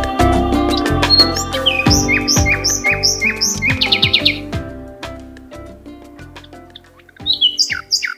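A small bird chirping over background music that fades out. Short falling chirps come about three a second, a quick trill follows about four seconds in, and louder chirps come again near the end.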